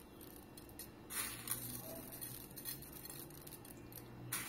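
Faint light rustling and ticking of chocolate sprinkles being pinched from a plastic tub and scattered by hand over a mousse in a glass dish, with a slightly louder rustle about a second in.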